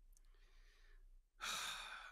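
A man's audible sigh, a breathy rush of air about a second and a half in, with a fainter breath before it.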